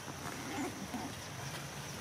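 Faint short monkey calls, about half a second and a second in, over a steady outdoor background hiss.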